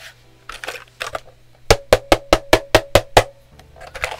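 A fast, even run of about ten sharp taps on the Redragon K596 mechanical keyboard, some six or seven a second, each with a short metallic ring, starting near the middle and lasting about a second and a half, with a few fainter clicks before it.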